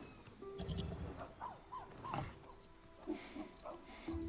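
Film soundtrack: a string of short rising-and-falling ape calls over a quiet, sustained music score.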